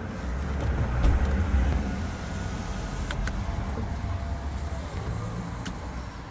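Steady low rumble of a car, heard from inside its cabin, with a couple of light clicks about three seconds in.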